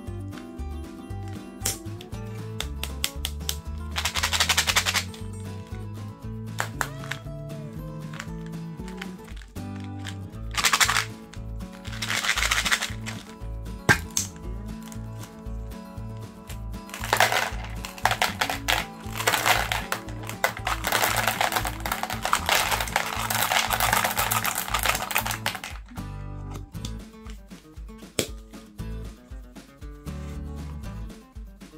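Background music with bursts of hard candy rattling in a plastic tub: Skittles shaken and tipped in their lidded plastic jar, in two short bursts and then a long rattling stretch through much of the second half.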